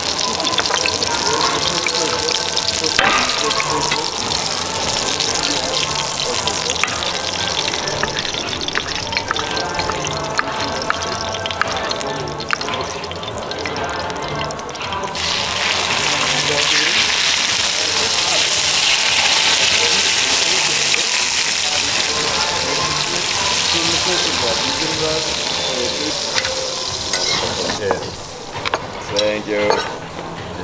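Busy restaurant dining room with background music and voices, and small clicks and knocks of a knife and cutlery as a waiter slices a steak on a wooden board. About halfway through a loud steady hiss comes in and stops just before the end.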